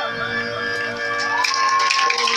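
Unaccompanied a cappella singing: voices hold a long sung note, then glide up to a higher held note about a second in. Near the end, a rattle begins shaking in quick strokes.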